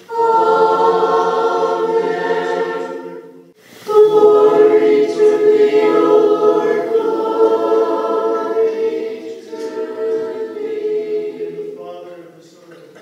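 Choir singing a cappella Orthodox church chant in two long phrases, with a short break just before four seconds in; the second phrase fades away near the end.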